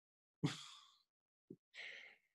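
A man's breathy sigh, one soft exhale about half a second in, then a small click and another faint breath near the end.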